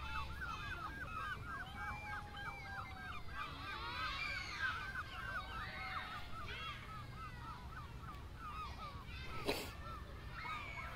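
Birds calling: a rapid string of short, repeated calls through the first half, with scattered calls throughout. A single sharp knock sounds about nine and a half seconds in.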